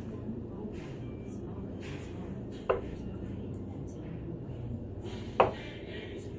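Two darts hitting a dartboard, each a single short, sharp thud, about two and a half seconds apart, over a steady low background hum.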